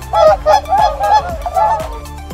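A swan calling in a rapid series of short, nasal honks, over background electronic music with a steady beat.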